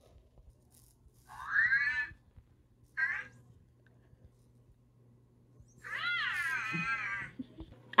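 A cat meowing three times: two shorter meows in the first few seconds, then a longer, wavering meow near the end.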